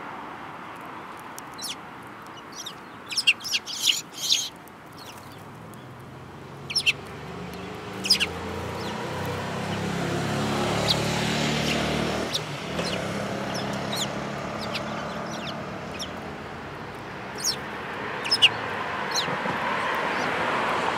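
Eurasian tree sparrow feeding on millet seed from a person's palm: short, sharp chirps and pecks come in small clusters, several together a few seconds in and again near the end. A low hum swells and fades in the middle.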